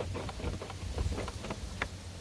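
Low rumble of wind on the microphone, with a few faint clicks and knocks.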